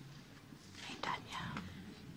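People whispering and talking quietly, with a louder stretch of whispered speech about a second in.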